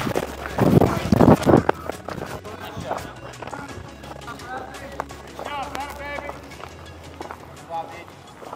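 Rustling and knocking of catcher's gear against a body-worn microphone, loudest in a cluster about a second in as he moves after the catch, over faint voices and background music.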